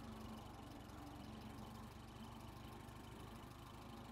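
Silver King Model 450 tractor's Continental 162-cubic-inch four-cylinder engine idling faintly and steadily.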